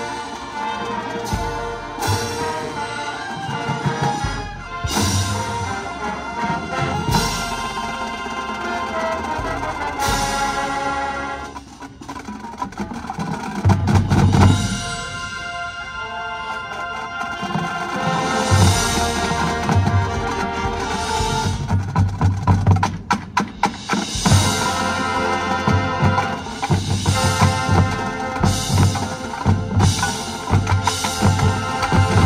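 High school marching band playing: horns and winds over a drum line and percussion. The music drops briefly about twelve seconds in, then returns with loud, rhythmic bass drum and snare hits through the second half.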